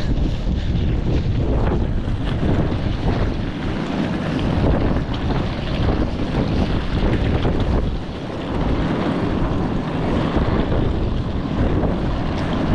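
Strong gusty wind buffeting the camera microphone: a loud, rumbling rush that rises and falls with the gusts, easing briefly about four and eight seconds in.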